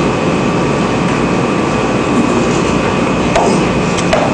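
Steady room hum and hiss with a faint high-pitched whine running through it, and a brief faint sound a little after three seconds.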